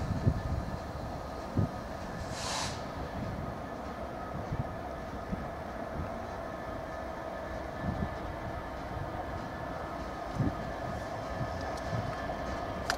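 Class 66 diesel-electric locomotive drawing slowly closer, its engine giving a steady hum with a held whine over it, and occasional low thumps from the wheels. A brief hiss comes about two and a half seconds in.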